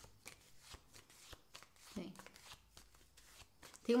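A deck of tarot cards being shuffled by hand: a run of quick, soft, irregular card clicks and slides.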